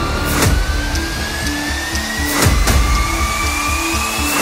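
Background music: a synth tone that rises steadily in pitch, with held low notes and a few drum hits over a heavy low rumble.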